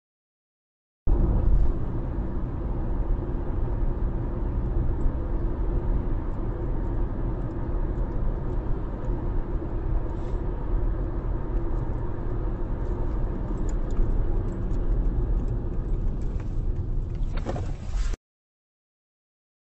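Road and engine noise of a moving car, heard from inside the cabin through a dashcam microphone: a steady low rumble that starts about a second in. Near the end there is a brief louder rush of noise, then the sound cuts off.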